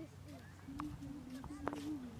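A person's voice holding one long, steady low note through the second half, like a drawn-out hum or call, over a steady low rumble.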